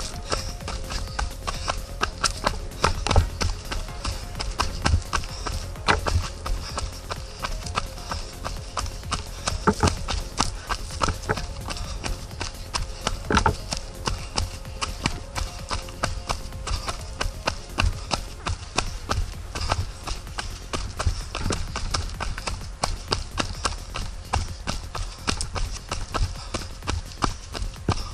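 Quick, steady running footfalls of a trail runner going downhill on a dirt path, each stride a sharp knock. Under them is a low rumble of the hand-held camera pole jolting with each step.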